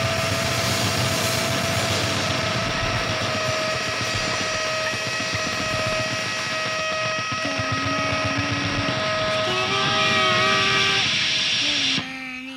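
Distorted electric guitars sustaining a dense, noisy drone with steady feedback tones. A few wavering held notes come in over the last few seconds, and the wash cuts off abruptly at the end.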